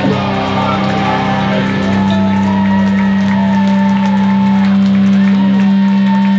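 A live metal band's electric guitars hold one low note that rings on steadily without changing, with shouts from the crowd over it.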